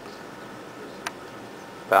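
Low steady hiss with a single small click about a second in, as a multimeter probe tip is set on the amplifier board's metal screw terminal.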